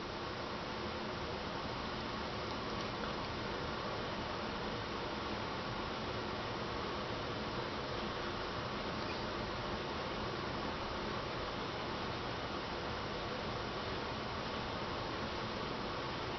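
Steady, even hiss of room tone with no distinct sounds.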